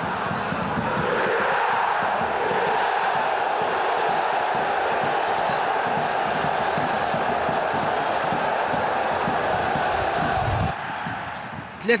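Large stadium crowd of football supporters chanting and cheering after an equalising goal, with a bass drum beating underneath. The crowd sound cuts off abruptly near the end, leaving a quieter stadium background.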